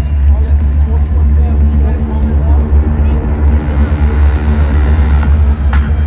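Live stadium concert sound: a loud, steady deep synth bass drone with held tones, over crowd voices and shouts. A high hiss swells and cuts off abruptly about five seconds in, and sharp hits begin near the end.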